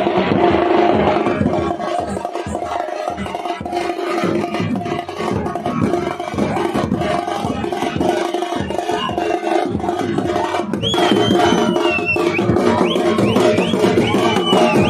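Loud, fast festival drumming with a steady held tone beneath it, accompanying a tiger dance. Near the end a shrill whistle cuts in, sliding and chirping upward several times.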